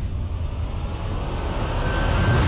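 Cinematic title-sequence sound effect: a deep, steady rumble with a noisy whoosh that swells up through the second half.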